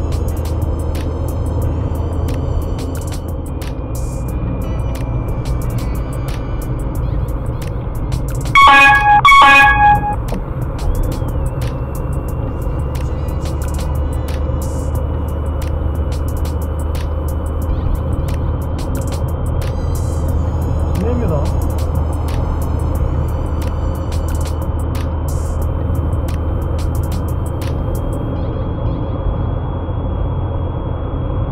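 Steady low drone of a car's engine and road noise heard from inside the cabin, with a car horn blaring twice in quick succession about eight and a half seconds in.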